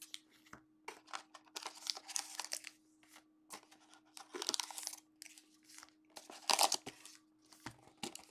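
Foil trading card packs being pulled from a hobby box and handled: several short bursts of crinkling and rustling wrapper, with a few small clicks.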